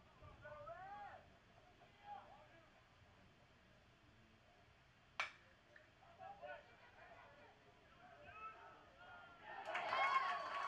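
Crack of a metal baseball bat hitting the ball, once, about five seconds in, over faint distant shouts from players and fans. Near the end, crowd voices swell as the ball is in play.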